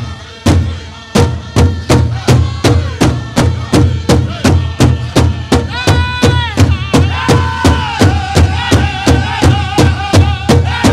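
Powwow drum group playing: a big drum struck in a steady beat of about two and a half strokes a second, with men's voices coming in on a long high note about six seconds in and singing on over the beat.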